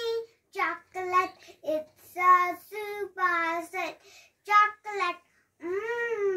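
A young girl singing a rhyme unaccompanied, in short syllables held on steady notes with brief pauses between them, then a long note that slides down in pitch near the end.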